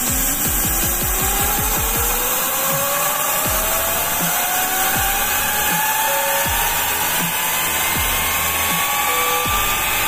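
Steam rushing with a loud, steady hiss into a small steam turbine, and a whine rising steadily in pitch as the turbine and its belt-driven 100 W 12 V DC motor, a car radiator fan motor run as a generator, spin up to speed.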